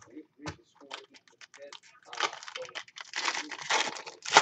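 Foil wrapper of a baseball card pack being torn open and crinkled by hand: a few light clicks and rustles at first, then dense crackling of the foil from about two seconds in, loudest near the end.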